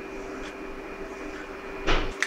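Hot oil sizzling steadily in a small tadka pan with curry leaves, green chilli and mustard seeds. Near the end there is a sudden louder burst as cumin seeds are tipped into the oil.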